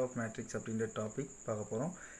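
A man talking, explaining a maths problem, over a faint steady high-pitched trill in the background.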